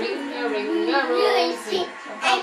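A young child singing a tune, holding notes that step up and down in pitch.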